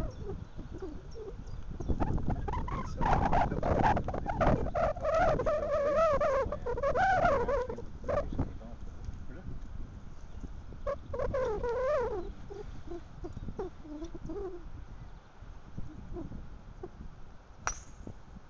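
Low rumbling noise with indistinct voices, then near the end a single sharp crack as a driver strikes a golf ball off the tee.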